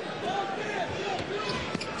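A basketball bouncing on a hardwood court, with a few sharp bounces in the second half, over background voices.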